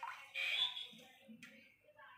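Water splashing and dripping in a steel bowl as washed leaves are lifted out of it, with a small click a little later.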